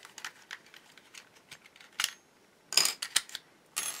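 Scattered sharp plastic clicks and rattles from a cordless drill's battery pack being taken apart by hand, as its retaining clips and springs are pulled out of the cell holder. The loudest clicks come in a quick cluster about three quarters of the way through.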